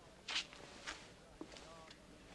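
Faint rustles and scuffs of movement, four short ones, the loudest about a third of a second in. A faint murmured voice comes near the end.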